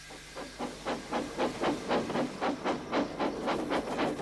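Steam locomotive chuffing steadily as it pulls its train, about five exhaust puffs a second.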